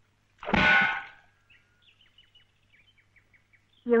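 A metal pot clangs once, loud, and rings briefly as it fades. Then a bird gives a faint series of short high chirps.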